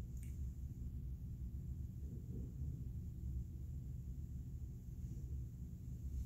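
Quiet room tone: a steady low hum with no speech, and one faint click just after the start.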